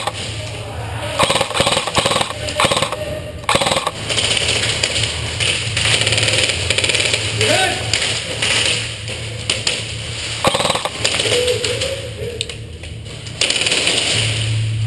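Bursts of rapid shots from game guns (airsoft/paintball type) firing in clusters, over a steady low hum, with voices calling out now and then.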